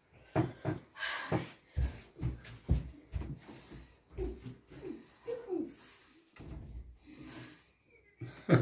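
A string of soft knocks and clicks as small magnetic game stones are handled and set down on a cloth-covered table. A few faint murmured voice sounds come in around the middle.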